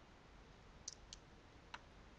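Three faint computer mouse clicks over near silence, about a second in and near the end.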